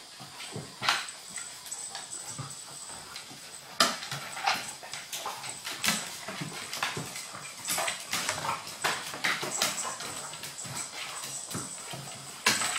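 Dogs playing on a hardwood floor: irregular clicks and scuffles of paws and claws on the wood, with occasional short dog noises.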